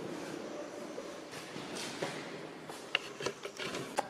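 Faint room tone in a small plastered room, with a few soft clicks and knocks about three seconds in from the handheld camera being moved.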